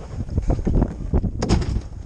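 Wind buffeting the microphone on an open boat at sea, a rough rumble, with a few sharp knocks through it about halfway through.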